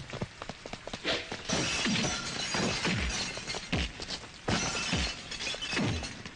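Film fight sound effects: a run of punch and body-blow impacts, each with a short falling boom, about one a second, mixed with glass bottles smashing and shattering.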